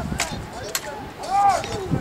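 Distant shouted calls from several voices out on the football pitch, including one high call about one and a half seconds in. Two short sharp knocks come in the first second.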